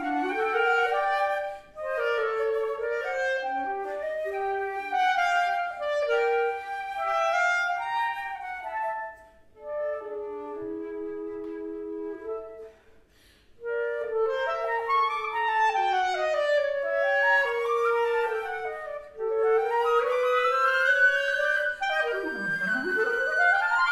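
Flute and clarinet duo playing a contemporary chamber piece: two intertwining lines of quick, shifting notes. The playing breaks off briefly about two-thirds of the way through, then resumes, with one line gliding slowly upward near the end.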